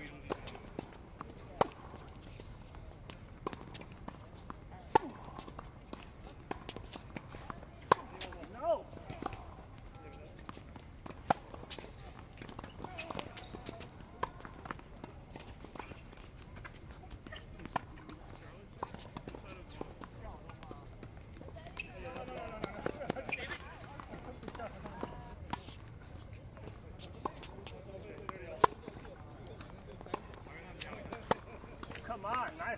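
Tennis balls struck by rackets and bouncing on a hard court during a rally: sharp pops every second or two, with some footsteps and brief faint voices between shots.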